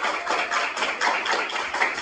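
A group of schoolboys clapping their hands together in a steady rhythm, a dense run of sharp claps in a small room.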